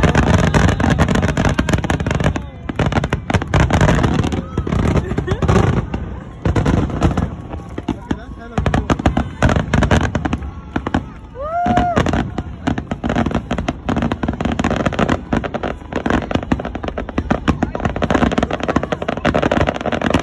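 Aerial fireworks display: a rapid, near-continuous barrage of bangs and crackling shell bursts, with spectators' voices in the crowd.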